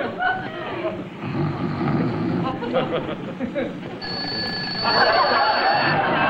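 Low murmuring for the first few seconds. About four seconds in, a high, steady ringing starts, like a bell, and it becomes louder and fuller near the end.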